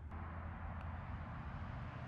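Steady outdoor background noise: a low rumble under an even hiss, with no clear event standing out.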